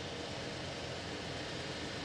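Steady, even hiss of outdoor city background noise with distant traffic.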